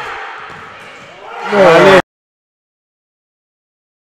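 A loud, excited shout in a sports hall as a goal is scored, loudest about a second and a half in, after a fading echo. At two seconds the sound cuts off abruptly into complete silence.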